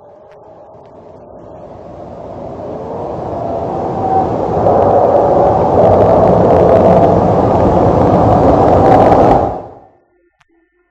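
F-104 Starfighter's J79 turbojet running with its afterburner lit on the takeoff run. The noise swells over the first five seconds, holds loud, and cuts off suddenly near the end.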